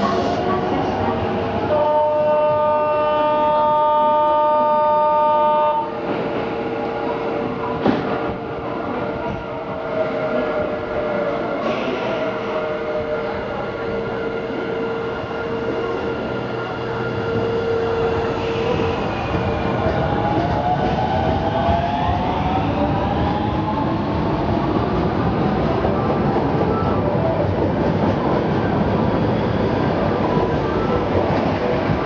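Osaka Municipal Subway 20 series electric train moving along a station platform, with running and wheel-on-rail noise. Its motor whine rises in pitch as it gathers speed. A steady horn-like tone sounds for about four seconds near the start.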